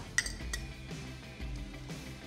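Soft background music, with two light metallic clinks in the first half-second as a metal utensil scrapes against a small glass bowl.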